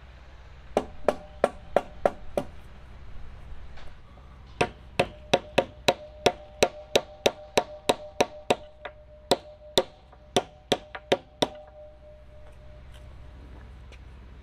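Hammer blows on a wooden girt at a timber-frame post. A quick run of about six blows comes first, then, after a pause of about two seconds, a longer steady run of about eighteen at roughly three a second, with a faint ring hanging under the second run.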